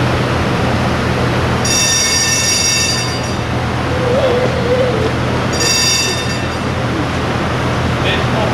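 A tram running on its rails, heard as a steady low hum and rumble. The wheels squeal high-pitched twice, for about a second and a half starting near 2 s and again briefly near 6 s.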